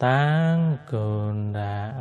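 A Buddhist monk chanting in Mon in a low, steady voice: two long held syllables, the first a little higher in pitch, with a short break just under a second in.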